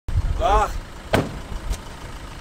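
The cab door of a flatbed work truck slammed shut once, a single sharp bang about a second in, followed by a lighter knock.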